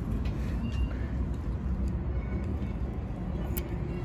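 Steady low rumble of distant road traffic, with a few faint light clicks.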